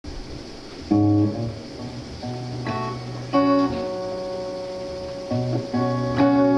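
Semi-hollow electric guitar playing a slow instrumental intro: picked chords and single notes left to ring, a new one every second or so, with the strongest near the start and about halfway through.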